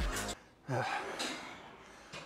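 Electronic backing music cuts off just after the start, then a man lets out one loud gasping breath that trails off: he is winded from a hard set.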